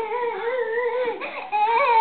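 Baby vocalizing in two drawn-out, high-pitched, wavering calls, the second starting about halfway through and louder than the first.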